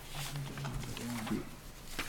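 Faint room noise in a meeting hall with a low hum and a short, soft murmured voice sound a little past halfway.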